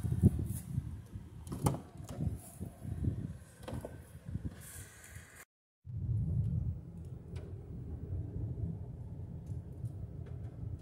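A car door is worked by hand, with several clicks and thumps. After a sudden break, the steady low rumble of the car driving on a dirt road is heard from inside the cabin.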